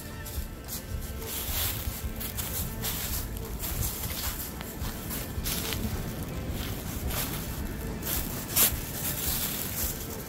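Footsteps crunching and rustling through deep dry fallen leaves, an irregular run of crackles with one sharper crunch near the end.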